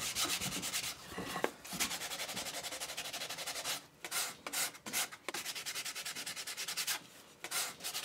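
Sandpaper rubbed by hand along a piece of wood in quick back-and-forth strokes, several a second. The strokes pause briefly a little under four seconds in and again about seven seconds in, then resume.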